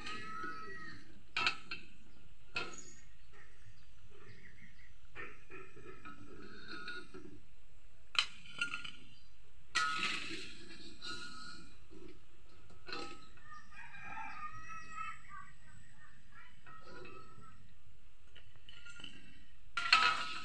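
Oil frying in a wok, with a metal ladle clinking against the wok a few times as fritters are lifted out. A rooster crows in the background partway through.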